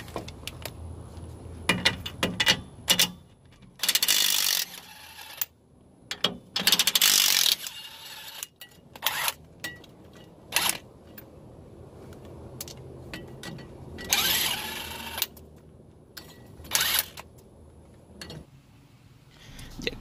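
Cordless impact wrench hammering on suspension nuts in repeated bursts, several of them lasting about a second, with short pauses between.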